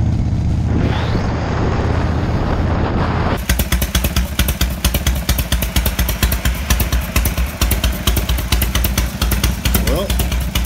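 1976 Harley-Davidson Electra Glide Shovelhead V-twin running at road speed with wind rush, then, after a cut about three seconds in, the same bike idling at a standstill with a rapid, pulsing exhaust beat.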